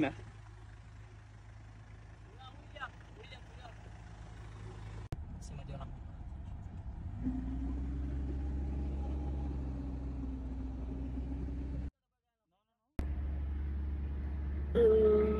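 Classic American car's engine running as the car drives, heard from inside the cabin: a steady low rumble with a held hum that grows louder about seven seconds in. It cuts out completely for about a second near the end, then resumes.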